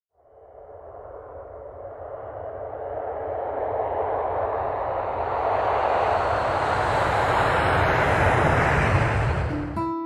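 A rushing whoosh sound effect that swells steadily louder for about nine seconds and then falls away. Plucked acoustic guitar notes come in at the very end.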